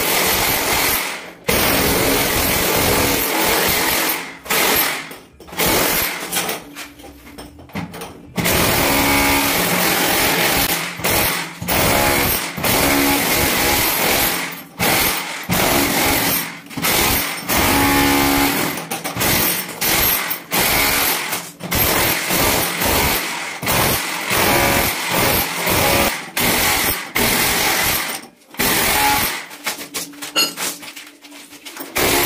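Electric demolition hammer with a chisel bit chipping up ceramic mosaic floor tiles, running in loud bursts of a few seconds with short breaks between them, the longest break about six to eight seconds in.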